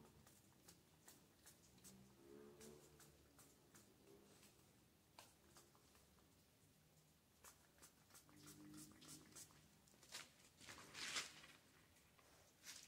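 Near silence: faint scattered clicks, with a brief soft rustle near the end.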